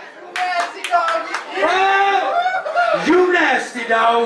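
About five quick, sharp hand claps in the first second and a half, followed by a man's voice calling out in drawn-out, rising and falling shouts.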